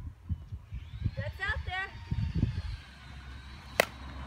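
A bat striking a pitched ball: one sharp crack near the end, over low wind rumble on the microphone.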